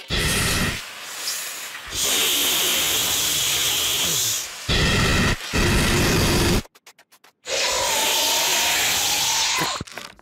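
Cartoon sound effects of a spring-mounted horn nozzle spraying out puffs: a series of loud rushing hisses, each lasting from under a second to a few seconds with short breaks between them. A rising whistle runs through the last hiss.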